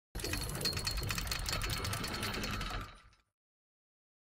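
A fast, even mechanical clicking rattle, a sound effect on an end-of-programme production ident. It runs for about three seconds and then cuts off abruptly.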